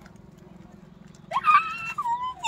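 A gray langur's high, loud squeal that rises sharply about a second and a half in and then holds its pitch, over a faint low hum.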